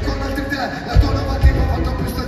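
Live hip hop music played loud through an arena sound system, with two heavy bass-drum hits near the middle.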